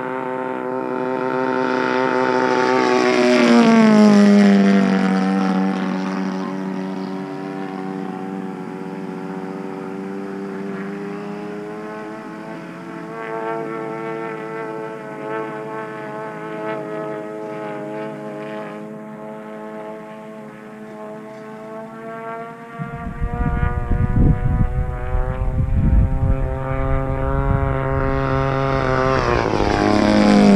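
Engine and propeller of a 116-inch Skywing NG radio-controlled plane droning in flight. The pitch drops as it passes close about four seconds in, holds steady while it flies farther off, then rises and drops again as it makes another close, louder pass near the end. For several seconds before that last pass, a gusty rumble sits under the engine on the microphone.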